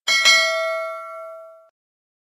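Notification-bell "ding" sound effect of a subscribe-button animation: a bright chime struck once as the bell icon is clicked. It rings out and fades, then cuts off suddenly after about a second and a half.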